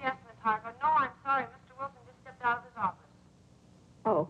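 Speech only: a woman talking in short phrases.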